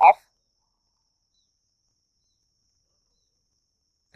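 Near silence after a man's voice says "off", with only a faint steady high-pitched tone in the background.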